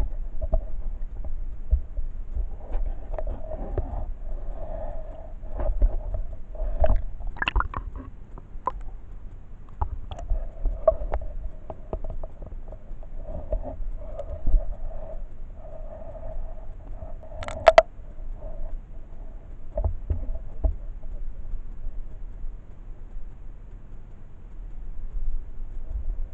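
Muffled underwater sound from a camera held below the surface: a low rumble of water and handling, scattered knocks, and a faint hum that comes and goes. A sharp click about two-thirds of the way through is the loudest sound.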